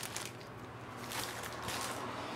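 Paper and a plastic sleeve rustling as stacks of homemade zines are handled and sorted, with short irregular crinkles.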